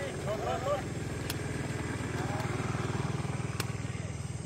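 A small engine running steadily with a low, fast, even pulse, a little louder in the middle. Brief snatches of voices and two sharp clicks are heard over it.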